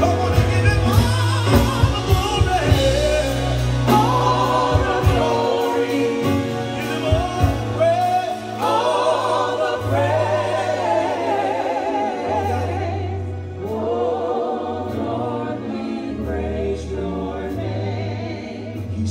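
Live gospel worship song: women singing with vibrato over keyboard, sustained bass notes and a drum kit. The high sizzle of the band drops away about two-thirds of the way through.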